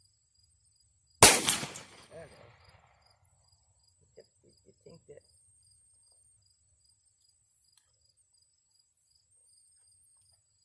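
A single handgun shot about a second in, sharp and loud, with its report echoing away over about a second. A faint, steady high-pitched buzz of insects runs underneath.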